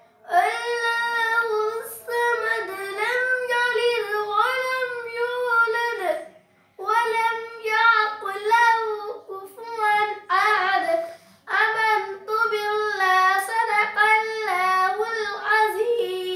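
A young girl singing a naat, an Islamic devotional song, solo and without accompaniment, in long melodic phrases with brief pauses for breath about six and eleven seconds in.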